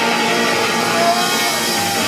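Rockabilly band playing live, an instrumental passage with no vocals: electric guitar over upright double bass and drums, with a few short gliding guitar notes.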